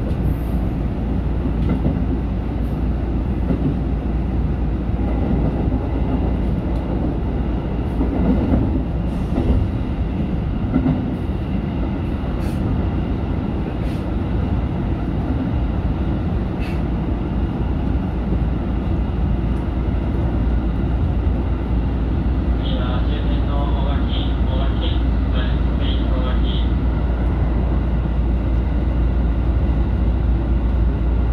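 JR Central 313 series electric train running along the track, heard from the driver's cab: a steady rumble of wheels on rail with a few sharp clicks. About three-quarters of the way through, a few seconds of quickly repeated ringing tones sound over it.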